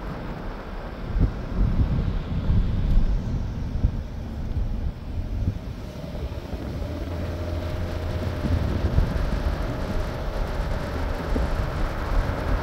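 Road noise of a moving car, with wind buffeting the microphone; a faint steady hum joins the rumble about halfway through.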